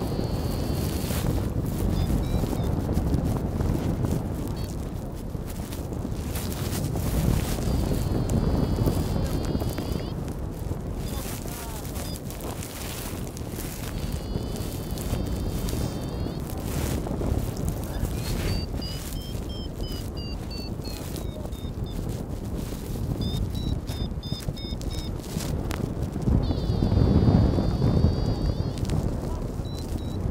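Wind buffeting the microphone in flight: a low rumble that swells and eases. Faint high beeps come and go, at times climbing and then falling in pitch.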